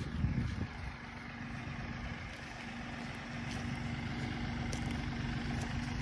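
An engine running steadily, its even hum starting about half a second in and slowly growing louder.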